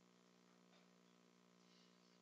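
Near silence, with only a faint steady electrical hum.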